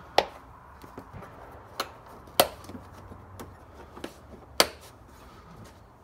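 Plastic air box lid being snapped back into place on its clips: a few sharp, separate clicks, the loudest late on.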